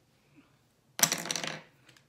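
A short, sudden clatter of small hard makeup items knocking together, about a second in, lasting about half a second, as makeup products are rummaged through to pick up an eyeliner.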